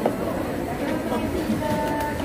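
Indistinct voices and chatter in a busy hall, with a short steady tone near the end.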